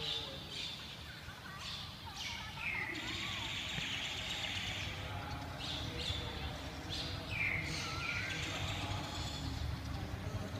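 Birds chirping again and again, with several short falling chirps, over a steady low rumble.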